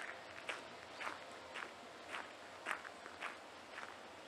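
Footsteps of a person walking at a steady, even pace, about two steps a second.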